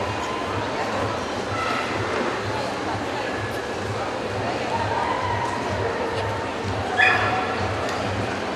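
Busy show-hall din of crowd chatter and background music with a steady low beat, about two pulses a second. A dog gives a single sharp bark about seven seconds in.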